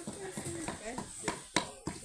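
Pestle knocking against a bowl as toasted chile is pounded and mashed by hand, a few short knocks a second, under people talking.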